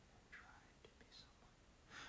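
Near silence, with a man's faint breathy mouth sounds and one soft click.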